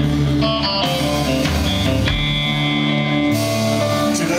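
Live rock band playing an instrumental passage: electric guitar over bass guitar and drum kit, with no vocals.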